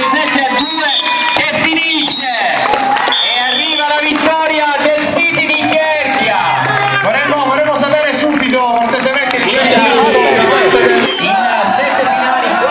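A group of five-a-side footballers shouting and cheering together in a goal celebration, many excited voices overlapping, with a few high shrieks near the start.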